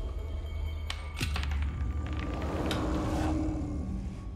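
Horror trailer score and sound design: a low rumbling drone, a few sharp hits with a falling sweep about a second in, then a swelling rise that peaks and fades shortly before the end.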